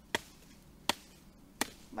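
A large knife blade chopping into a wooden branch to strip it of side shoots: three sharp strikes about three-quarters of a second apart.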